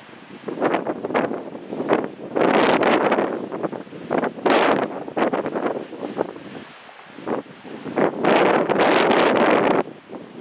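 Wind buffeting the microphone in irregular gusts, several loud swells with quieter lulls between them.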